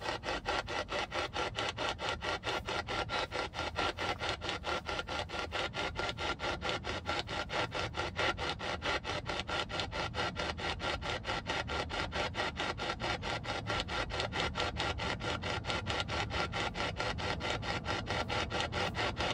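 P-SB11 spirit box sweeping through radio stations: a steady, choppy rasp of radio static, chopped evenly several times a second as it jumps from station to station.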